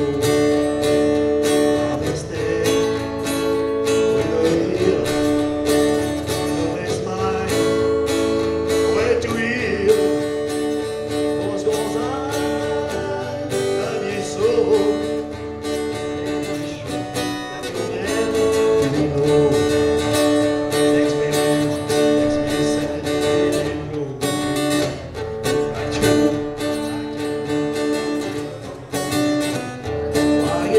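Acoustic guitar strummed and picked steadily in a country-rock tune.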